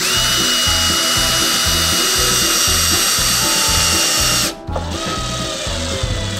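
A cordless drill-driver drives a long deck screw into pine stud timber. Its motor runs with a steady high whine for about four and a half seconds and stops abruptly. Then comes a short, lower-pitched burst that seats the screw.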